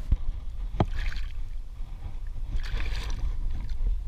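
Shallow water splashing and sloshing as a hand-held bass is lowered into the water and released, in two bursts about one second and three seconds in, with a sharp click just before the first. A steady low rumble runs underneath.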